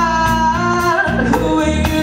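Live band performance: a singer holding long sung notes over electric bass and a drum kit, with drum hits falling at a steady beat.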